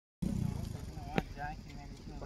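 A small motorcycle engine idling under people talking, starting suddenly after a moment of silence. There is one sharp click about a second in.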